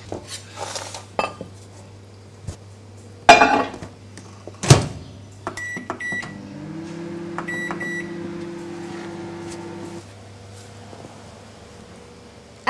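Microwave oven being loaded and started: a clatter and then a sharp bang as the door shuts, a few short high beeps as the timer knob is turned, then the oven running with a steady hum for about four seconds before it cuts off.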